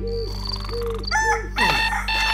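A cartoon rooster crowing in a string of rising-and-falling calls over a steady musical drone, then an electronic alarm clock starting to beep near the end: a wake-up cue for morning.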